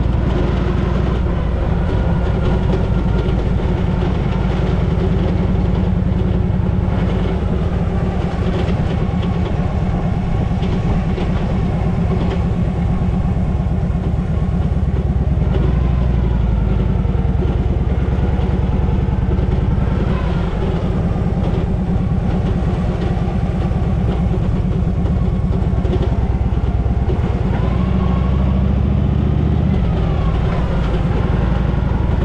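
Harley-Davidson Panhead V-twin engine running as the motorcycle is ridden along a road. The carburettor has been newly adjusted. The engine note rises and falls a few times as the throttle opens and closes.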